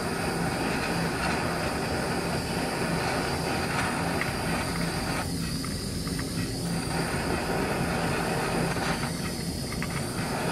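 Steady hiss of a handheld gas torch flame heating an aluminum joint, with the aluminum brazing rod held in the flame to preheat it before brazing. The hiss thins briefly twice, about halfway through and again near the end.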